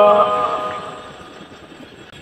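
The end of a long held note of Red Dao lượn folk singing, its echo dying away over about a second, then a short pause with only faint background hiss.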